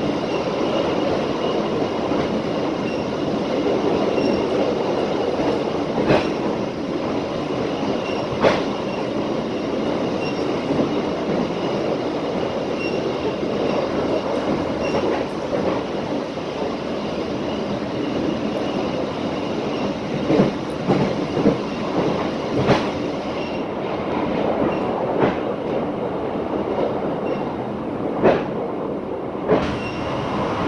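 Running noise of a moving passenger train heard from inside the coach: a steady rumble of wheels on rails, with occasional short sharp clicks, more of them in the second half.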